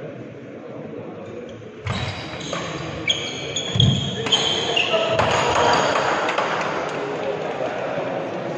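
Badminton doubles rally on a wooden indoor court: sharp racket strikes on the shuttlecock and high-pitched shoe squeaks start about two seconds in. A louder wash of players' and spectators' voices takes over around the middle as the rally ends.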